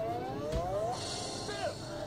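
Cartoon soundtrack played from a TV: a pitched sound glides upward, a low thud comes about half a second in, and short character vocal sounds start after about a second and a half.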